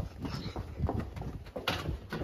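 Hurried running footsteps on a hard floor, uneven thuds a few tenths of a second apart, with one sharper knock near the end.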